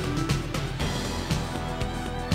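Opening theme music of a TV programme: sustained synth-like notes over a steady beat, about two beats a second.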